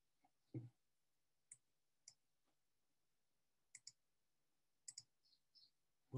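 Near silence: room tone with a soft thud about half a second in, then a few faint clicks, two of them in quick pairs.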